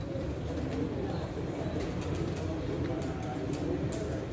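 Low cooing bird calls over a steady low background rumble, with a few sharp boot steps on stone paving in the last second.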